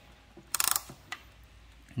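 A winding key turning in a mechanical mantel clock, winding its mainspring: a quick burst of ratchet clicks about half a second in, with a few single clicks around it.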